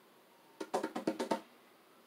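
A quick rhythmic run of about eight light taps or clicks lasting under a second, with a little ringing.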